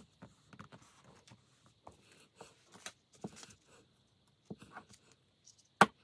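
Paper collage pieces being handled and laid on a notebook page: soft scattered rustles and light taps, with one sharp click near the end.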